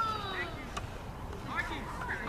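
Distant voices calling out across a soccer field: a long drawn-out call falling in pitch that ends about half a second in, then a few short shouts near the end.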